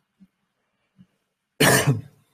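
A man coughs once, a short loud cough near the end, after a near-silent pause.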